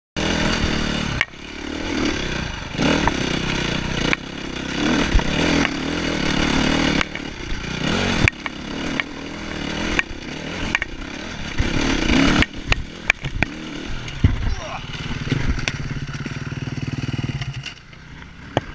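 Enduro dirt bike engine revving up and down over rough ground, with frequent knocks and clatter from the rocky trail. Near the end it holds a steadier note, then stops abruptly.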